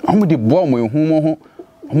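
A man's voice talking in two stretches, drawn-out and sing-song, with a short pause about a second and a half in.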